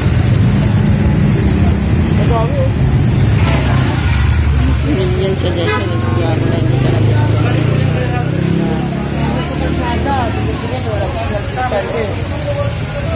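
Motorcycle engines running as they pass close by, with voices of people around mixed in; the engine sound eases off about eight seconds in.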